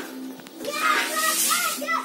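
High-pitched voices, children among them, talking and calling close by, starting about half a second in, with a short hiss of noise midway.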